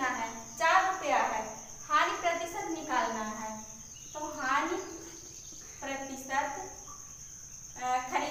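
A woman speaking in short phrases, with pauses, over a steady high-pitched whine that never stops.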